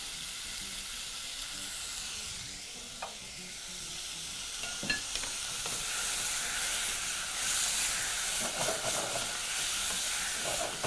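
Beef chunks sizzling in a pot as they brown at high heat, a steady hiss. A few light clicks against the pot come about 3 and 5 seconds in, and the stirring gets louder in the second half.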